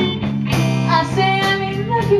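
Live music: a woman singing over guitar accompaniment, with sustained notes.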